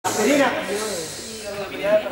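People talking, with a short hiss at the very start.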